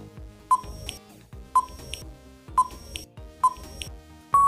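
Quiz countdown timer sound effect: a short, sharp beep about once a second, four times, counting down the time to answer, over background music.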